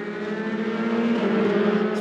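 Formula 3 racing car engine running at high revs at speed, a steady note that gets gradually louder.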